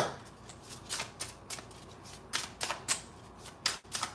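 A deck of reading cards being shuffled by hand: quiet, irregular card clicks and slaps, about a dozen scattered through the moment.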